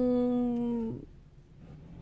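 A woman's voice holding a long, level "nuuu" (Romanian "no") for about a second. It then breaks off into a pause with only a faint low background hum.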